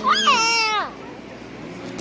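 A young child's high-pitched, drawn-out squeal that rises and then falls in pitch, lasting about the first second, followed by quieter room noise.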